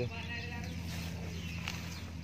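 Faint outdoor background: a low steady hum with a few faint bird chirps and a couple of light clicks.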